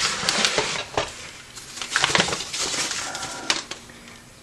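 Newspaper rustling and crackling as it is pulled out of a cardboard box and unfolded by hand, in two spells of handling.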